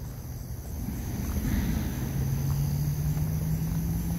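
A low, steady mechanical hum, like an engine or a motor unit, that grows louder from about a second in, with insects chirping faintly behind it.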